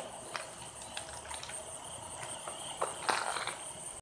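Insects, crickets among them, keep up a steady high buzz in the open air. Several soft, uneven knocks and footsteps come through, more of them a little after three seconds.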